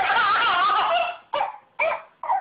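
A toddler's long, high-pitched, wavering squeal that breaks off about a second in, followed by two short yelps.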